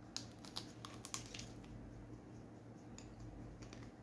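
Biting into a chocolate-coated ice cream bar: the hard chocolate shell cracks in a quick run of small crisp snaps in the first second and a half, then a few quieter clicks of chewing about three seconds in. A low steady hum runs underneath.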